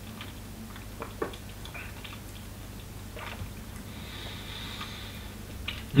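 Faint wet mouth clicks and smacks, a few scattered sounds, from a sip of whisky being worked around the mouth during tasting. A low steady hum lies underneath.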